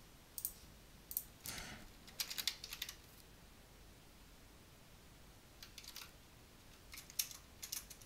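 Computer keyboard keys being typed, faint, in two short flurries of clicks with a pause of a few seconds between them.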